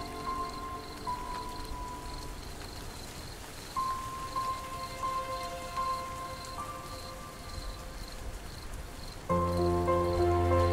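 Slow, soft ambient sleep music over a steady rain recording: sparse, long-held high notes with a quiet stretch between them, then a fuller, louder chord with deep bass coming in near the end.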